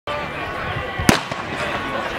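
A starting pistol fired once, about a second in: one sharp crack with a short echo, the start signal for a 100 m obstacle race. Voices carry on underneath.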